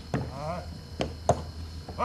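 Irregular sharp wooden knocks from a horse-driven clay mill working, four in two seconds. A short rising voice call sounds just after the first knock.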